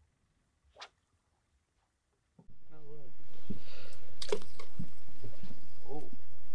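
Near silence with one brief high squeak early on, then from about two and a half seconds in a steady low outdoor rumble on an open boat, with indistinct voices and a few short knocks over it.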